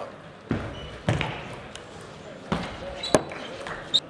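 Table tennis ball knocking on the table and bats: a handful of short, sharp, irregularly spaced knocks, the sharpest a little after three seconds, in a large hall.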